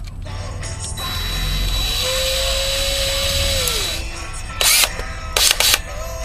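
Cordless DeWalt drill with a 90-degree right-angle extension run for about two seconds: its motor whine rises, holds steady and then winds down. Two short, sharp noises follow near the end.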